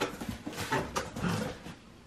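Cardboard box flaps being pulled open by hand: a string of short rustles and scrapes that fade toward the end.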